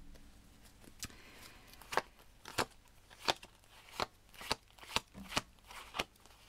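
A deck of cartomancy cards being shuffled by hand, making a series of sharp card clicks and snaps, roughly one or two a second.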